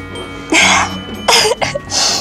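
Two short, breathy vocal bursts from a person, the first about half a second in and a second, shorter one a little after a second, over quiet background music.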